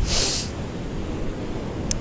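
A short sniff through the nose, about half a second long, from someone whose nose is running in the cold wind. Under it, wind buffets the microphone with a low rumble, and the sea washes steadily.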